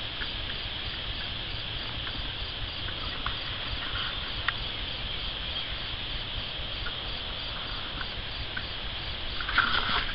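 A steady, high-pitched chorus of insects with a fast, even pulse, over a low rumble.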